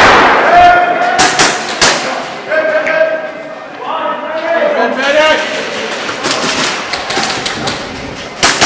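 A loud thump right at the start, then players shouting long drawn-out calls across a large echoing hall, then sharp clacks of airsoft guns firing and BBs striking in the last few seconds.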